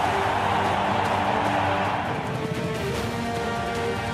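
Racecourse crowd cheering, fading after about two seconds, under background music with long held notes.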